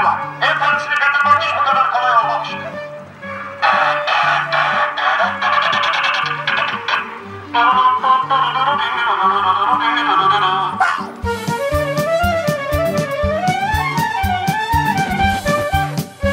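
Background music: a melody over a repeating bass line, changing about eleven seconds in to a busier track with a steady drum beat.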